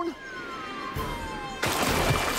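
A whistle sound effect glides steadily down in pitch for about a second and a half as the duckling falls. Then a wood duck duckling splashes into the water near the end.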